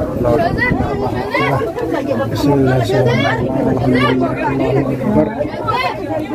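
Several people talking at once, their voices overlapping in loud, steady chatter.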